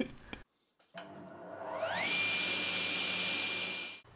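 An electric motor spinning up: a whine that rises in pitch over about half a second and then holds steady over a rushing hiss, stopping abruptly at the end.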